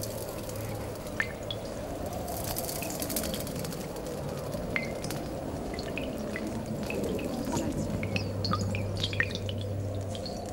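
Water dripping: single drops plinking irregularly into water, a few early and more close together near the end, over a steady low hum.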